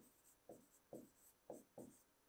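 Faint strokes of a pen writing on an interactive whiteboard screen: about four short scrapes, roughly half a second apart.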